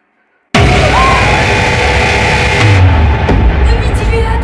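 A brief near silence, then about half a second in a sudden, very loud horror music sting with a deep rumble and held tones, a jump-scare effect.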